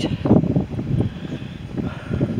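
Wind buffeting the microphone: an uneven low rumble with no clear pitch.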